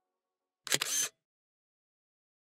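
A camera shutter sound effect: one short snap, under half a second long, about two-thirds of a second in.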